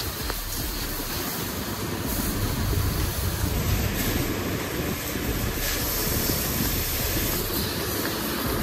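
Steady rumbling noise of a moving vehicle and road, an even roar without a clear engine note.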